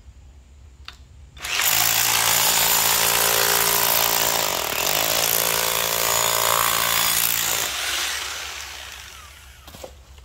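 Electric rotary hammer running as a jackhammer, chiselling downward, starting about a second and a half in and running for about six seconds. Its motor note dips briefly about halfway through as it bears down under load, then recovers. It cuts out and winds down over the last couple of seconds.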